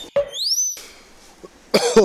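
A high rising whistle-like squeak near the start, then a short loud burst of a person's voice near the end.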